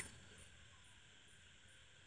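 Near silence: faint steady background hiss between stretches of narration.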